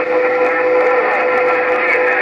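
A steady whistle of a few held tones over radio hiss from a President HR2510 radio's speaker tuned to 27.085 MHz.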